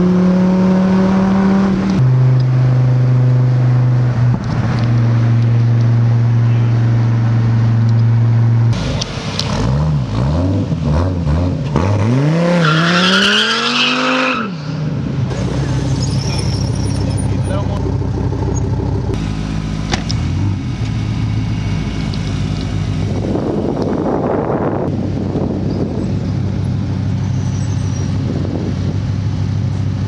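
Dodge Viper ACR's V10 engine heard from inside the cabin, running at steady revs and dropping to a lower steady pitch about two seconds in. Later the engine note rises and falls several times over a few seconds, then settles into a steadier lower drone with road noise.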